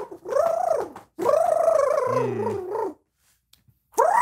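A high-pitched voice cheering in two long, drawn-out calls, with a lower voice joining briefly about two seconds in.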